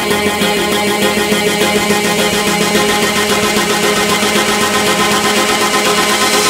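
Electronic dance music from an electro DJ mix: a sustained, buzzing synth chord with a fast, even repeating pulse, without a clear beat.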